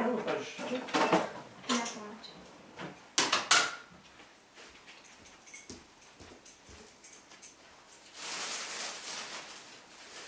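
Kitchen clatter of cutlery and dishes being handled at an open drawer, with two sharp clinks about three and a half seconds in and smaller ticks after. A rustling noise comes near the end.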